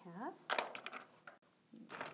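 Loose nuts clattering and clicking against one another and the lantern base as they are handled, in a quick cluster about half a second in, after a single spoken word.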